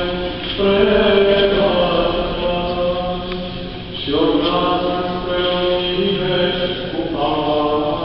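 Small group of male cantors chanting Eastern Orthodox church chant in unison. The melody moves in phrases over a steady held low note, with short breaths about half a second and four seconds in.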